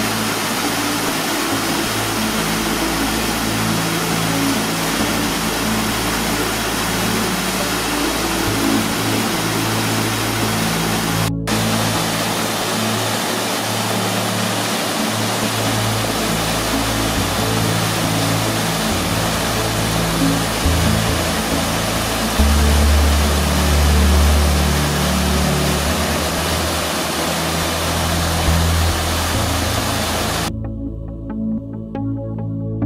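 Steady rush of a small waterfall and rocky stream under slow background music with sustained low notes. The sound cuts out for an instant about eleven seconds in.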